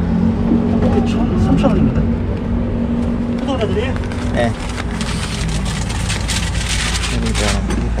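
A steady low mechanical hum with a few short fragments of a voice. From about five seconds in, a crackling hiss with quick rustles and clicks joins it.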